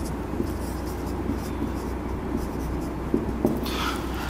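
Marker pen writing on a whiteboard: short scratchy strokes, mostly in the first second and a half, over a steady low hum.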